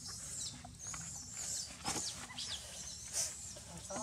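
A baby monkey squealing: a string of short, high-pitched cries that fall in pitch, coming one after another at irregular intervals, with a louder one about two seconds in.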